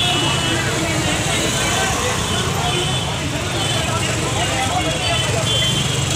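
Busy street noise: several people talking at once over a steady low rumble of traffic and idling motorbikes.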